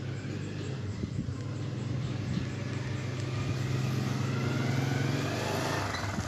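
A motor vehicle's engine runs with a steady low hum. From about two seconds in, its pitch rises and it grows louder, then it eases off near the end.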